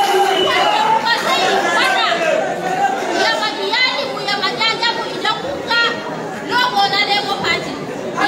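A woman's speech amplified through a microphone and PA system in a large hall, with crowd chatter underneath.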